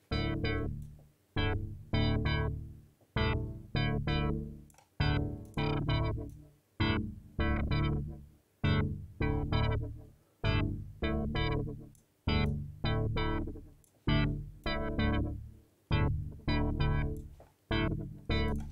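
Chord stabs from an Xfer Serum synth patch play a UK garage chord progression, in groups of two or three short decaying hits that repeat steadily. The filter cutoff is modulated by an LFO whose rate is itself swept by a second LFO, giving a wobbly, fast filtered effect.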